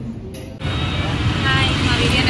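Road traffic noise that starts suddenly about half a second in, as a low steady rumble, with a woman's voice starting over it soon after.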